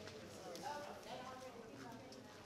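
Faint background chatter of people talking, with a few light ticks or knocks.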